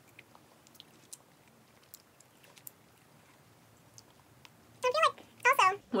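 Quiet room tone with a few faint, scattered small clicks, then a woman's voice starts up loudly near the end.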